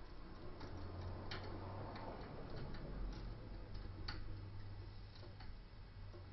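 Faint, irregular clicks and light scraping of a half-diamond lock pick working the pins of a five-pin deadbolt under tension, with two sharper clicks about a second in and about four seconds in.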